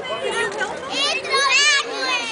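Children's high-pitched squealing voices, several short squeals that bend up and down in pitch, louder about halfway through and again near the end.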